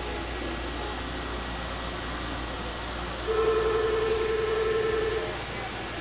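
Disney Resort Line monorail running, with a steady horn tone sounding for about two seconds from about three seconds in.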